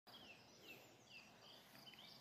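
Faint rural ambience: a bird repeating short downward-sliding whistled notes, over evenly repeating high insect chirps.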